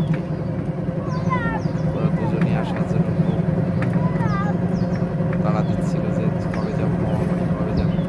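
Auto-rickshaw's motor running steadily, heard from inside the open passenger cabin, with wind buffeting the microphone.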